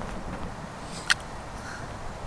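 A single sharp knock about a second in, as a concrete cinder block is set down in shallow water, over faint outdoor background noise.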